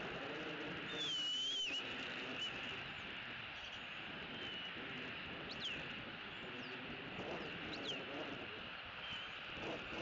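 Thin, high bird calls over a steady outdoor hiss. A wavering whistle comes about a second in, followed by several short falling whistles later on.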